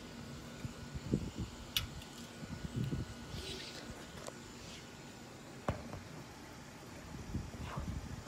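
Handling noise from a handheld phone moving about: scattered light knocks and rubs, the sharpest about two seconds in and again near six seconds, over a faint steady hum that fades out about halfway through.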